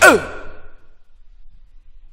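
The techno track ends on one last downward-sliding pitched sweep that dies away in the first half-second, then the music stops, leaving only a faint low hum.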